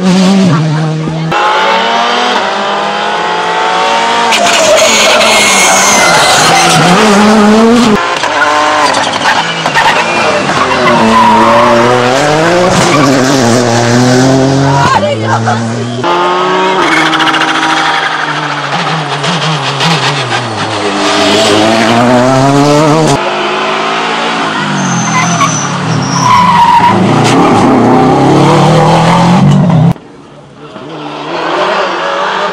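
Rally cars at racing speed on a tarmac stage, two passing one after the other; each engine's pitch climbs and drops again and again as the driver shifts gears and lifts for the bend.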